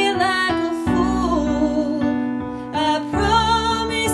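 A woman singing a slow ballad with vibrato over piano accompaniment, in two phrases with a short pause in the voice partway through.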